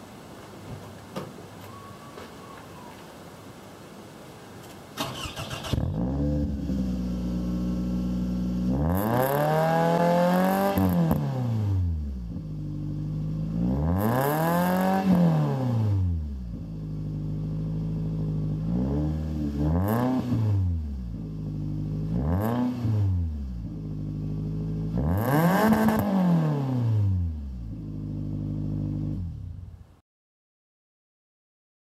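2007 Toyota Camry SE exhaust through a newly fitted stainless DNA Motoring axle-back muffler. The engine starts about five seconds in and idles, then is revved five times, the rises and falls in pitch coming every few seconds, two of them short blips.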